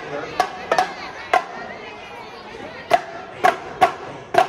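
Marching drumline playing sparse, separate accents: about seven sharp drum hits with irregular gaps, including a quick pair and a pause of over a second in the middle. Crowd chatter fills the gaps between hits.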